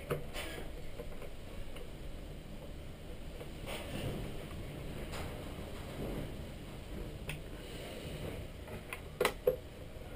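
Small screwdriver turning screws into the plastic back case of a hand-held RC transmitter, with faint rubbing and handling of the case. A few light clicks come through it, and a sharper quick double click comes near the end.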